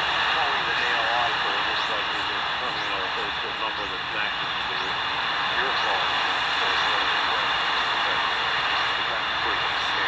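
An AM amateur radio operator's voice on the 80 m band, weak and buried in steady shortwave static, played through a small portable receiver's speaker. Faint high sweeping chirps recur about once a second under the hiss.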